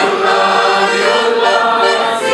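Hohner Student piano accordion playing held chords, steady reedy tones, after a brief dip just before.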